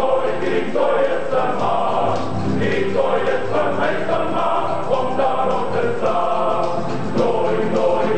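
Male voice choir singing in several parts, the voices rising and falling in a steady song.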